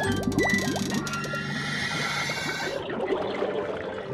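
Cartoon underwater bubbling sound effect: a quick stream of short rising bloops as air bubbles pour out of an opened submarine hatch, over background music.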